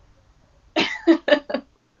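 A short laugh: four quick, breathy bursts starting about three-quarters of a second in.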